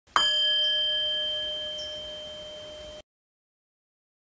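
A single struck bell-like chime rings once and slowly fades, holding several clear steady tones, then cuts off suddenly about three seconds in.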